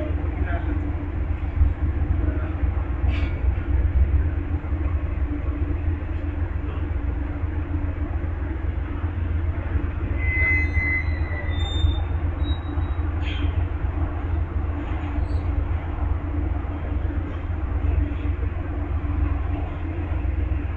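Amtrak Superliner passenger train standing at a station platform with its locomotives idling: a steady low rumble under a constant hum.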